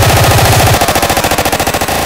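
Hardcore gabber techno with a rapid roll of distorted kick-drum hits. About three-quarters of a second in, the heavy bass drops out and the roll gets faster and tighter.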